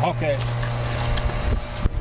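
A steady low hum, broken about a second and a half in by low rumbling bumps of wind and handling on the microphone, with a sharp click just before the end.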